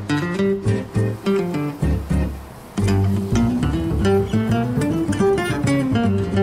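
Background music: acoustic guitar playing plucked and strummed notes, with a brief lull about two seconds in.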